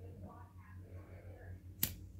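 A single sharp click near the end as a disposable flint lighter is struck and lights.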